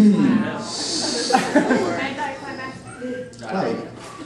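People's voices, unclear and not forming words, with a short hiss about a second in.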